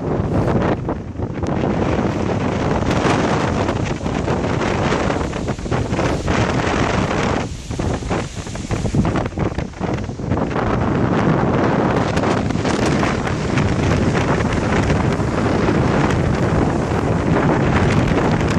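Wind buffeting the camera's microphone, loud and gusty, easing briefly for a couple of seconds around the middle before picking up again.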